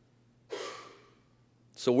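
A man's single audible breath into the microphone, sudden and hissy, fading over about half a second, in a pause between sentences; he starts speaking near the end.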